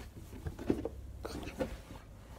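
A child's voice, quiet and indistinct, in short bits.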